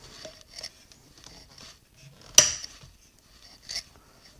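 Metal lid of a water-putty tin being handled: light scrapes and small ticks of thin metal, with one sharp click a little past halfway and a smaller one near the end.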